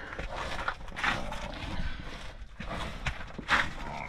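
Gravel crunching in irregular scuffs and steps as a person moves about and crouches down on it.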